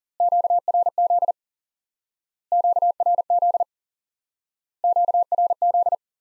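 Morse code for QRZ (the Q-code for "who is calling me?") keyed as a steady single-pitch beep at 40 words per minute, sent three times, each burst about a second long.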